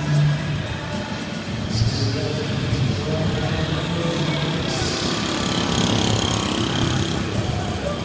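Indoor velodrome crowd ambience, with music and a voice over the public address. The rushing noise grows brighter in the second half.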